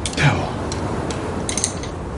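A brief falling vocal sound at the start, then a few small sharp clicks of handling about one and a half seconds in, over a steady room hum.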